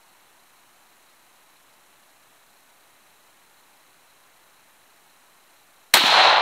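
Faint steady hiss, then a single sharp rifle shot just before the end from a Ruger M77 Gunsite Scout in .308, its report trailing off.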